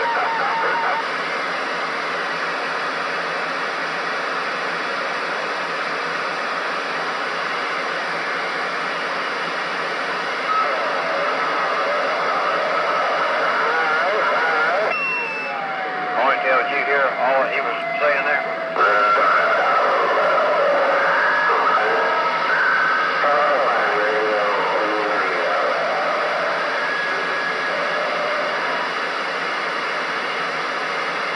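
CB radio receiver hissing with band static, with faint, garbled voices of distant long-distance (DX) stations fading in and out through the noise from about a third of the way in. About halfway through, a whistle slides down in pitch and holds for a few seconds before cutting off.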